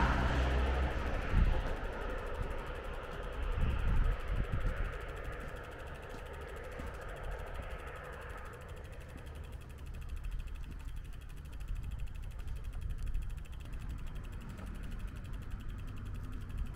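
A vehicle passing on the road, its noise fading away over the first several seconds, leaving a quieter outdoor background with a couple of low thumps.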